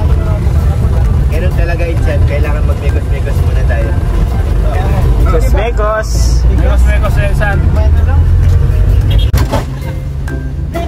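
Steady low rumble of a jeepney's engine and road noise, heard from inside the open passenger cabin, with voices talking over it.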